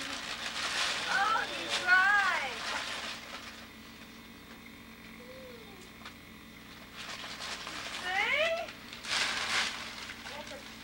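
A young child's high-pitched squeals and exclamations, several quick calls that slide up and down in pitch, clustered in the first few seconds and again near the end, with short bursts of rustling noise.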